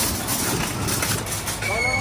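Empty wire shopping cart rattling as it is wheeled across a paved car park. A brief voice comes in near the end.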